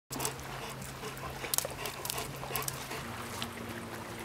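Wet flat-coated retriever panting, with scattered sharp taps of footsteps on wet concrete. A steady low hum runs underneath.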